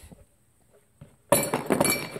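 After a near-silent pause, a sudden run of sharp clinks and clatter starts about a second and a half in as small metal RC car parts, such as ball bearings, are handled on a table.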